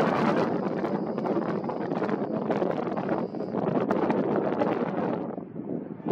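Wind buffeting the microphone: a rough, gusting rush of noise that eases off near the end.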